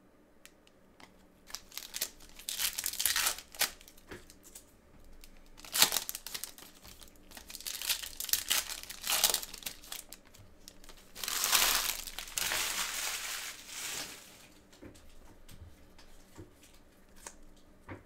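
Foil trading-card pack wrappers being torn open and crinkled by gloved hands. The crinkling comes in several loud bursts, the longest about two-thirds of the way through, with quieter clicks and rustles between them.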